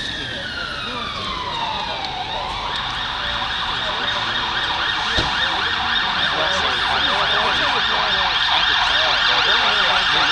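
Emergency vehicle siren: a slow wail falling in pitch, switching about two and a half seconds in to a fast yelp, and growing steadily louder.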